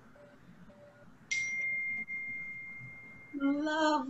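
A small bell or chime struck once, ringing with a single clear high tone that fades away over about two seconds. A voice starts near the end.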